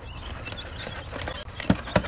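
Light scattered tapping and scratching on a cardboard chick carrier box, with two sharper knocks near the end, over a low steady hum.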